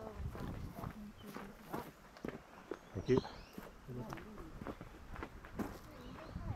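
Footsteps walking on a dry dirt track strewn with leaf litter, at a steady pace, with people's voices coming and going.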